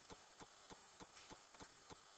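Faint, very regular ticking, about three ticks a second, over a low hiss.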